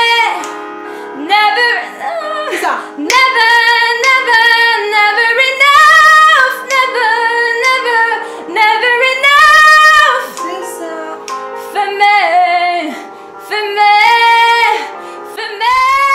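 A woman singing a series of high, sustained phrases with short breaths between them, each note held about a second. The high notes are belted with power, sounding full and thick rather than light.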